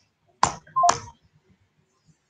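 Two short electronic blips from a phone line, about half a second apart, the second with a brief tone: the sound of the call being ended.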